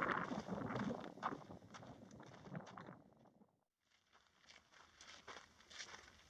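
Footsteps on a rocky dirt trail, irregular scuffs and clicks that fade, drop out to dead silence about three seconds in, then resume faintly near the end.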